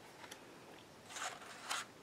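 Paper pages of a colouring book being flipped by hand: two short, soft rustles, one about a second in and one near the end.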